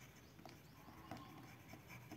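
Faint stylus strokes and light taps on a tablet while a word is handwritten, barely above room tone.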